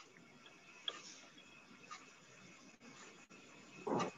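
Faint background noise from an open microphone on an online call, with a sharp click about a second in and a few fainter ticks. A louder short burst comes right at the end.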